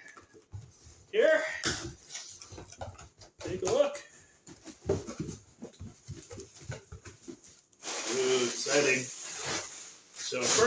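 A cardboard shipping box being opened by hand: small scratches and clicks as the packing tape is slit, then a rustle as the flaps are pulled open near the end. Short muttered vocal sounds come in between.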